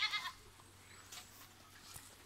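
A goat bleats once, a short, wavering high call at the very start, followed by faint background.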